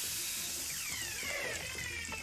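Anime sound effect of an ice power: a steady hissing rush, with a few falling whistles about halfway through, under faint background music.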